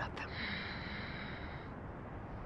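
Ujjayi breath: one long, audible hissing breath drawn through a narrowed throat, lasting about a second and a half.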